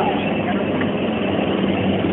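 Helicopters flying overhead: a steady engine and rotor drone with a low hum.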